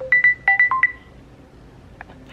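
Mobile phone ringtone: a quick run of about half a dozen short, high electronic beeps at different pitches within the first second, signalling an incoming call.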